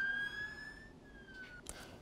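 Emergency vehicle siren wailing: one tone rising slowly, then a brief falling sweep, fading away about a second in.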